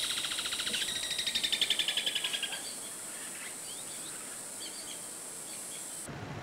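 Outdoor rural ambience: a steady high insect drone, with a fast pulsed trill over the first two and a half seconds, then a few faint bird chirps.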